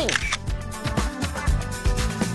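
Camera-shutter sound effect at the start, over upbeat background music with a steady beat.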